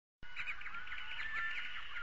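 Birds chirping, many short, rapid calls overlapping, beginning a moment in.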